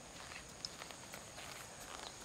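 Faint footsteps and light clicks of golfers walking on grass, over steady outdoor ambience with a thin high hiss; one sharper click stands out about two-thirds of a second in.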